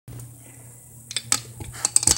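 Handling clicks and knocks as the recording gets going, several sharp ones from about a second in, over a steady low hum.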